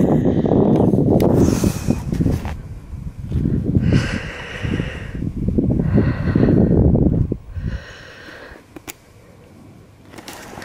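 Wind buffeting the microphone with a loud low rumble that eases off about three quarters of the way through, while a person breathes hard close to the microphone, a breath roughly every two seconds.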